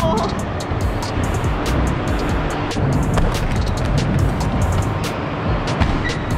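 Scooter wheels rolling with a low rumble across wooden ramps, with scattered irregular clacks, over background music.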